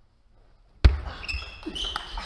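Sounds of table tennis play on a court floor: after a near-silent start, one sharp loud knock about a second in, followed by lighter clicks and brief high squeaks like shoe soles on the court.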